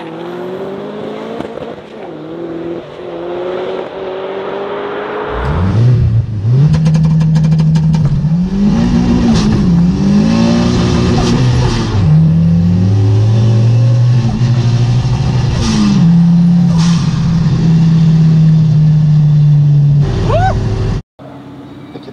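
Big-turbo Volvo 745 on a drag run. First an engine note rises from outside at the start line, then, heard loud from inside the cabin, the engine pulls at full throttle with its pitch climbing and dropping at several gear shifts. The note then holds steady at speed before cutting off suddenly near the end.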